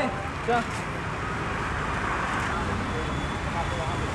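Steady street noise of road traffic, an even hum and hiss with no distinct events.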